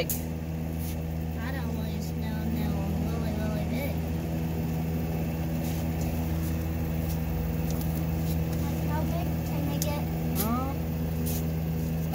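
A steady low mechanical hum, like a motor running, with faint, brief voices over it.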